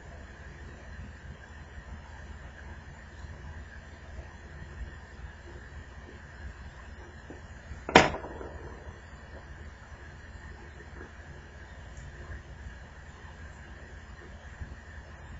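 Faint handling noises of fingers working on an opened smartphone's circuit board and metal shield, over a steady low hum, with one sharp, loud click about halfway through.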